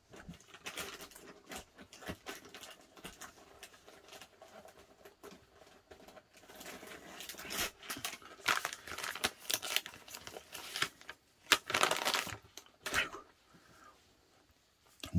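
Crinkling and rustling as a wet wipe is handled off-camera: irregular crackles that grow louder and busier in the second half, with one sharp loud crack near the end.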